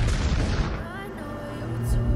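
A blast right at the start whose deep rumble dies away over about a second, then a second sharp blast near the end, from explosions close to a tank in combat. Background music plays underneath.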